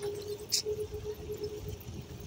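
Riding a bicycle: low wind and road rumble with a faint steady hum, and one brief high squeak about half a second in.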